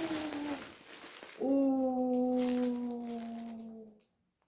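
A woman's drawn-out exclamation of delight, a long held 'ooh' that falls slightly in pitch, starting about a second and a half in and cut off suddenly at the end. A shorter vocal sound and a faint rustle come before it.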